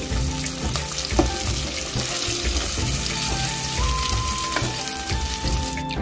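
Curry gravy bubbling and sizzling in a pot on the stove, a steady hiss, with background music playing softly over it.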